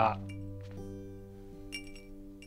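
A drinking glass clinks once, briefly and brightly, near the end, over soft background music.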